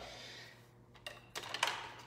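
A few faint, short taps and clicks: one about a second in and a small cluster around a second and a half, after a brief fading hiss at the start.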